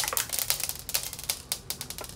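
Thin plastic of a two-compartment yogurt pot being bent and pressed to tip its small candy balls into the yogurt: a fast, irregular run of small clicks and crackles.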